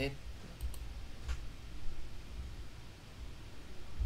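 A few sharp computer mouse clicks, a pair about half a second in and another about a second later, with a few soft low thumps over faint room noise.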